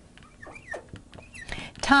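Felt-tip marker squeaking on a glass lightboard while figures are written, a few short, faint squeaks.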